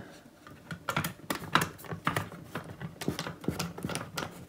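Screw being driven into a metal wall-light bracket with a drill bit, giving a run of irregular light clicks and ticks, several a second.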